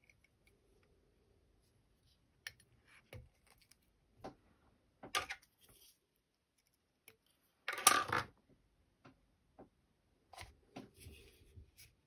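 Scattered small clicks and rustles of hands and tools working a fly clamped in a fly-tying vise, with one louder scrape lasting about half a second a little past the middle, and a quick run of soft ticks near the end.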